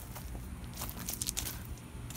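Someone moving through leafy garden plants over gravel: a string of short crunches and rustles, irregularly spaced, over a low rumble.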